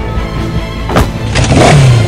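Theme music with a motorbike engine sound effect that starts and revs up loudly in the second half, its low note falling, after a sharp click about a second in.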